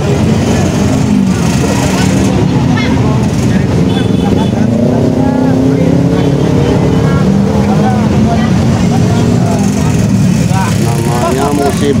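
Steady, loud traffic noise from motorcycles and other vehicles passing on a busy highway, with the voices of a crowd of people talking over it.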